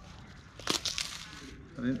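Leaf wrapping of a boiled bánh chưng sticky rice cake crinkling and crackling briefly as it is peeled apart by hand, about a second in.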